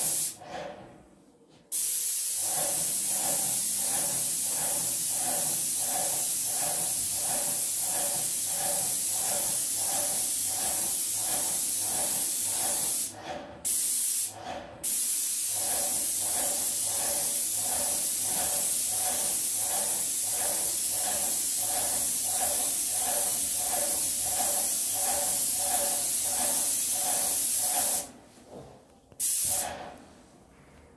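Graco airless paint sprayer spraying paint through the tip of a pole gun: a loud steady hiss with a regular pulsing, cut off briefly each time the trigger is released, once just after the start, twice in quick succession around the middle, and again near the end.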